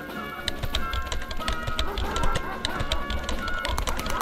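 Computer keyboard typing: a quick, irregular run of key clicks over steady background music with sustained tones.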